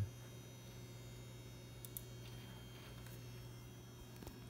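Quiet, steady low hum of a running Power Mac G4 tower and its CRT monitor, with a few faint clicks in the middle as the machine is being shut down.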